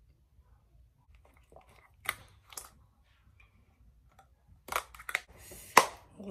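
Drinking from a plastic bottle and handling it: a quiet sip, then two sharp plastic clicks about two seconds in and a cluster of clicks and crackles near the end, the loudest just before the end.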